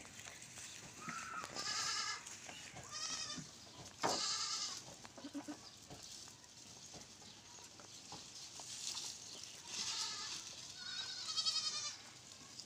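Goats bleating, several calls in turn, some with a quavering tremble. There is a cluster of bleats in the first five seconds and two more near the end.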